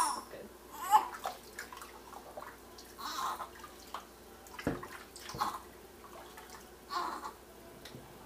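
Water sloshing and splashing in a stainless steel kitchen sink as a newborn baby is washed, with a few short fussing sounds from the baby and a couple of knocks midway.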